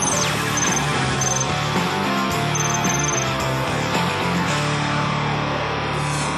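Loud TV sports programme theme music over the show's logo animation. It starts abruptly after a brief silence, opening with a quick falling sweep, then plays at a steady level.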